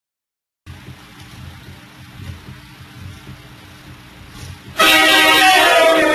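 Faint room noise, then about five seconds in a sudden, very loud train horn blast, a chord of several steady tones, that starts at full strength and holds.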